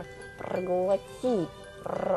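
Light background music with a character's wordless voice sounds over it, one drawn-out sound sliding down in pitch about a second in.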